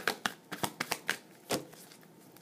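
A deck of tarot cards being shuffled by hand: a quick, uneven run of sharp card clicks and flicks, the loudest at the start and about one and a half seconds in.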